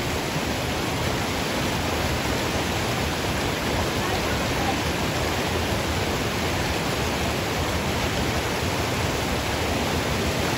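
Small waterfall pouring into a stream pool, a steady rushing of water with no letup.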